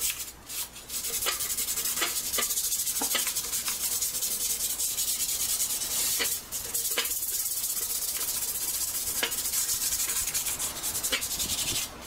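Sandpaper rubbed by hand over a metal tractor pan seat: a steady scratchy sanding, with a few light clicks and taps along the way.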